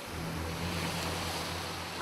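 A steady low motor-like hum with a second tone above it, under an even hiss, starting abruptly.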